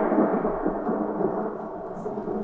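A rumbling stage sound cue, thunder-like, fading down gradually.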